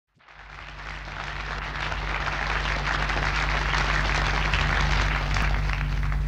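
Studio audience applauding, fading in over the first couple of seconds, with a steady low hum underneath.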